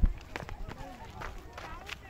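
Indistinct voices of people talking in the open air, with scattered footstep-like clicks. A loud thump comes right at the start.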